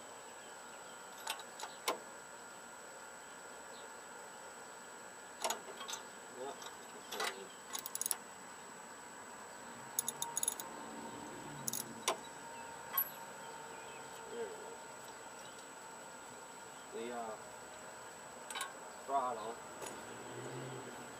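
Scattered sharp metallic clicks and clinks of a socket wrench being worked on a small Tecumseh engine, coming in irregular clusters.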